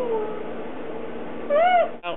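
A held, hummed note that trails off and falls in pitch just after the start, then one short meow that rises and falls in pitch about one and a half seconds in.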